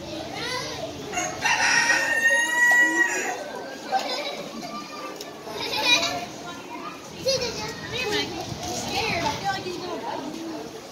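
A rooster crows once, starting about a second and a half in and lasting about two seconds, over the chatter of people and children in the barn.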